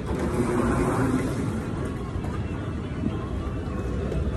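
Steady low rumble and hiss of an airport terminal's background noise, a little louder in the first second.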